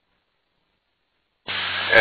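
Dead silence, then about a second and a half in a VHF aircraft radio transmission opens with a steady hiss of static and a faint low hum, just before the pilot speaks.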